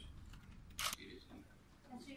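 A press photographer's camera shutter clicks once, a short sharp snap, in a quiet pause between speakers.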